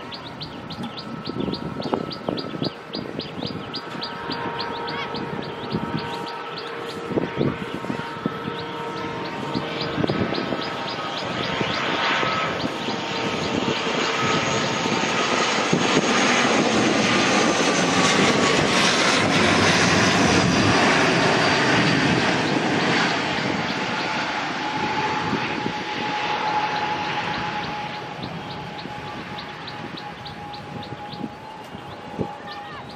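ATR twin-turboprop airliner flying past low on landing approach. Its engine and propeller sound swells to a peak about two-thirds of the way through, the propeller tone dropping in pitch as it passes, then fades. Birds chirp throughout, with a rapid even ticking near the start and end.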